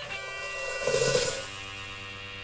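Electric guitar chord struck and left ringing, its notes sustained, in the sparse intro of a hardcore punk song. A brief noisy swell rises and falls about a second in.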